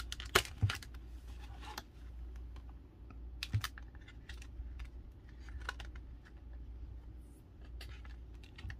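Printed photos and ring embellishments being tucked and slid by hand on a scrapbook page: scattered light clicks and taps of paper and card, bunched in the first two seconds with a few more later, over a low steady hum.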